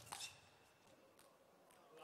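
A single sharp click of a table tennis ball being struck or bouncing, just after the start. After it comes near silence, with only the faint hush of the hall.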